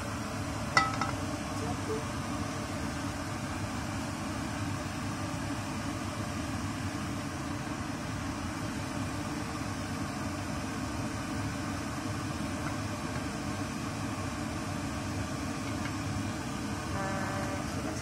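A single sharp metallic clank with a brief ring about a second in, a metal wok knocking as the stir-fry is tipped out onto a plate, over a steady low rumbling noise throughout.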